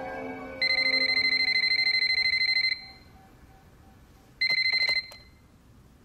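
Electronic telephone ringer trilling: one ring of about two seconds, then a second ring a couple of seconds later that stops after half a second, as if cut short.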